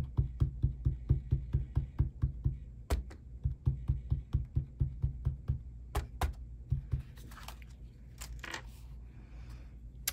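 Rapid light tapping, about five taps a second, as ink is dabbed through a plastic stencil onto a sheet of shrink plastic on the tabletop. The taps thin out about seven seconds in, giving way to soft scraping and rustling as the stencil is handled.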